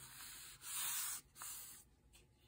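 Hands sliding and rubbing across the paper pages of a coloring book, pressing the open spread flat: a dry swishing rub in three strokes, the middle one the loudest.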